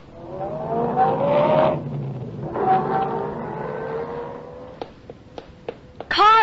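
Radio-drama sound effect of a car engine accelerating, its pitch rising in two long pulls over a low rumble. A few light knocks near the end.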